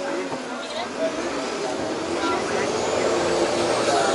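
Vaporetto water bus running on the canal, its engine and water wash in a steady noise that grows a little louder in the second half as the boat comes in to a stop.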